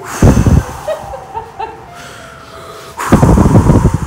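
A man blowing out two hard, exasperated breaths right onto the microphone, a short one just after the start and a longer one about three seconds in, each a loud rush of air.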